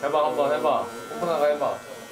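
Electric hair clippers buzzing steadily as they run over a closely shaved head, under voices talking.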